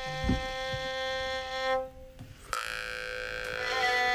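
Two kyryympa, Sakha long-necked bowed fiddles, playing long held notes; the sound drops away briefly about two seconds in, then a brighter bowed note comes in and settles back onto the held pitch near the end. A low thump about a quarter second in.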